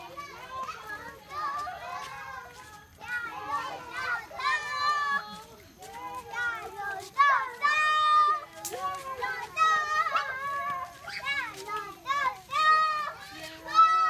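A group of young children chattering and calling out over one another in high voices, with several louder calls.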